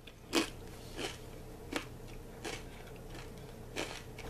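A person chewing a mouthful of crusty buttered olive bread, with about five irregular crunches as the crust is bitten down.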